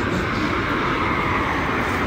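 Steady rushing road and traffic noise, even and unbroken, with no single distinct event.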